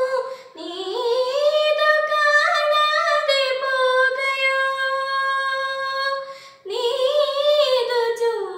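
A young girl singing a Malayalam song unaccompanied. About four seconds in she holds a long steady note, and there are short breath pauses between phrases.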